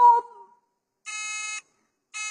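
A woman's Quran recitation ends on a held note that fades out within the first half second. After a pause, an electronic buzzer gives one steady, half-second beep about a second in.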